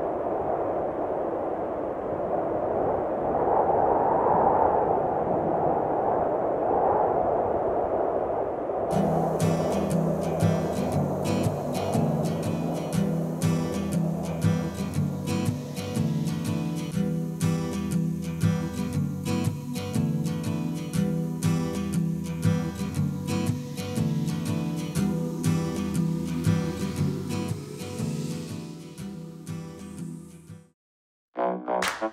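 For about the first nine seconds, a swelling rushing noise. Then an acoustic guitar is strummed in a steady rhythm, fading out near the end.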